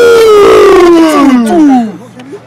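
A man's loud celebratory yell right at the microphone: one long cry that falls steadily in pitch for almost two seconds, then breaks off.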